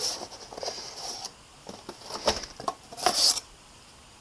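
Cardboard scraping and rustling as an inner cardboard box is slid out of a paperboard retail box, with a string of short clicks and taps. A louder scrape comes about three seconds in.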